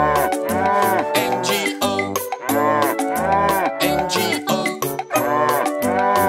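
Cartoon cow mooing in time to a children's sing-along song, its drawn-out moos standing in for sung letters. Each moo rises and falls in pitch over a bouncy music backing.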